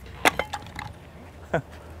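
Scrap car parts knocking together as they are handled, two knocks close together just after the start, and a short laugh near the end.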